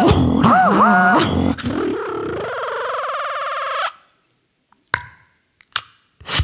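Beatboxing into a handheld microphone: quick vocal pitch glides that rise and fall, then a held wavering tone that cuts off suddenly about four seconds in. A near-silent pause follows, broken by two short clicks.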